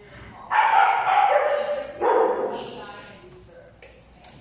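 A dog giving two loud, drawn-out barking calls, the first about half a second in and lasting over a second, the second shorter, about two seconds in.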